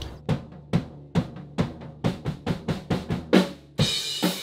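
Acoustic rock drum kit being played: sharp snare and bass drum hits, about two a second at first, coming faster after about two seconds, with a cymbal crash ringing out near the end.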